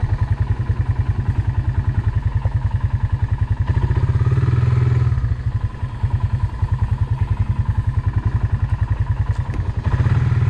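1992 Honda Fourtrax 300's single-cylinder four-stroke engine running at low speed, chugging evenly at about ten beats a second. It smooths out briefly about four seconds in as the revs pick up, with a thin steady whine running above it.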